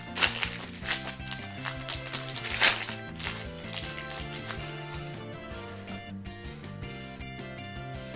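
Soft background music with held tones. In the first few seconds it is overlaid by a few sharp crinkles of a foil trading-card booster pack being torn open.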